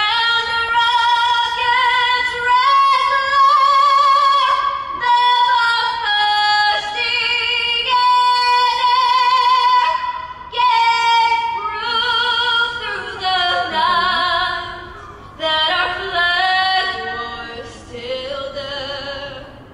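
A woman singing solo and unaccompanied, holding long notes with vibrato in phrases broken by short pauses for breath.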